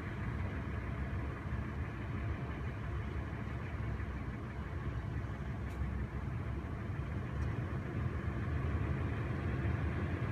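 Steady low rumble of a car's engine running, a little louder in the last couple of seconds.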